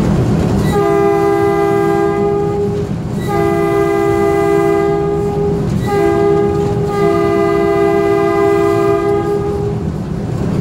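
Baldwin RS-4-TC diesel switcher's multi-note air horn sounding the grade-crossing signal: two long blasts, a short one, then a long one. Each blast is a chord of several notes over the low running rumble of the locomotive.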